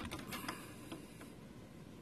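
Light clicks and rustles of fingers working flat ribbon cables and their plastic connectors loose on a laser printer's formatter board. The clicks are scattered through the first second or so, then fade to faint handling noise.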